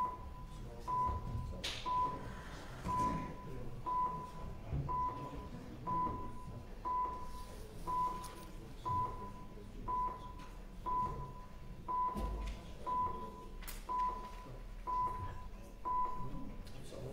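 Electronic voting system beeping while a council vote is open: a half-second beep at one steady pitch, repeated about once a second, over a low murmur of the hall.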